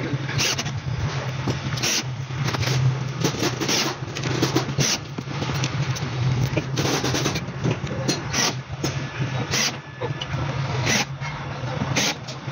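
Cordless drill/driver running in short bursts as it drives screws to fix concealed hinges onto plywood cabinet doors. Several sharp clicks are scattered through it, over a steady low hum.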